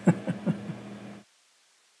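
A woman's brief chuckle: three short laugh pulses, each falling in pitch, fading out, then the sound cuts off abruptly to dead silence a little over a second in.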